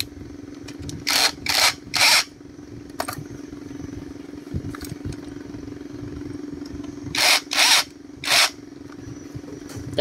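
A power tool run in short bursts while brush-cutter engines are taken apart: three quick bursts about a second in and three more near the end, over a steady low hum.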